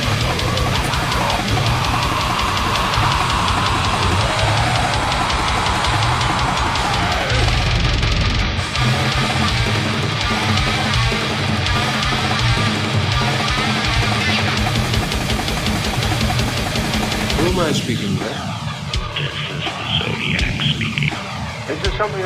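Brutal death metal / goregrind playing: fast drum kit and heavily distorted guitars filling the whole range. About eighteen seconds in, the heavy low end drops away and the band thins out as a spoken sample comes in.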